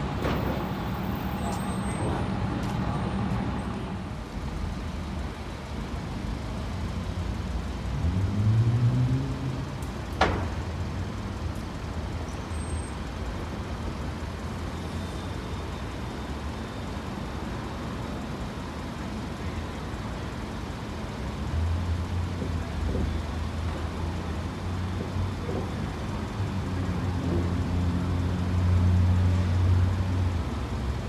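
City bus engines over street traffic. One engine rises in pitch as it pulls away about eight seconds in, and a sharp click comes a couple of seconds later. From about two-thirds of the way through, an articulated transit bus idles at the stop with a low steady drone that grows louder near the end.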